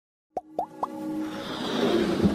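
Animated-logo intro sound effects: three quick rising bloops about a quarter second apart, then a swelling whoosh with a held tone that grows louder.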